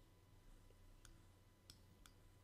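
Near silence: room tone with a couple of faint clicks, one about halfway through and a slightly louder one near the end.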